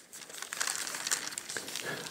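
Crackly rustling and crinkling close to the microphone, made of many small rapid ticks.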